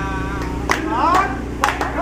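A man singing, holding one note and then sliding through a short phrase, while hands clap along with a few sharp claps. A steady low hum runs underneath.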